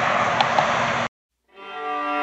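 Steady outdoor background noise cuts off abruptly about a second in. After a brief silence, slow background music with bowed strings fades in.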